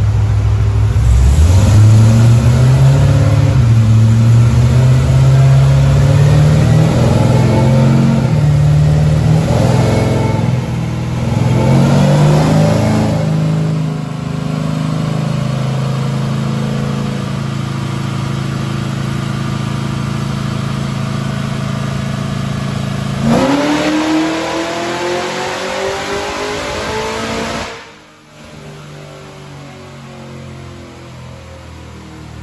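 Supercharged Chevy C10 short-bed truck's engine making a full-throttle pull on a chassis dyno, its pitch climbing and dropping several times as it goes through the gears, then holding steadier. About 23 s in the revs rise sharply once more, and near the end the engine sound cuts away and music begins.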